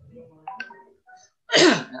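A person's short, loud vocal burst with falling pitch about a second and a half in, heard over a video call, after faint murmuring.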